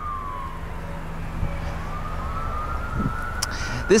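A siren wailing slowly, falling in pitch and then rising again, heard over a low outdoor rumble.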